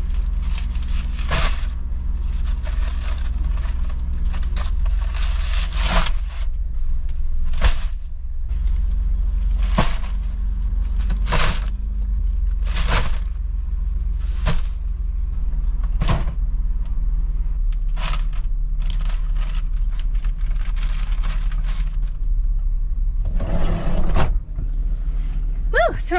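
Shopping bags and boxes being loaded into a minivan: crinkling plastic packaging and about a dozen short knocks and thuds as items are set down, over a steady low hum.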